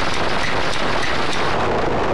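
Loud, steady, harsh noise from heavily effect-distorted audio, with no clear sound of its own left in it.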